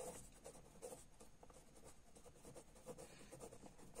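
Faint scratching of a marker pen writing a long word on paper, in short irregular strokes.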